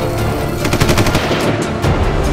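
A short burst of rapid automatic gunfire, under a second long near the middle, over background music.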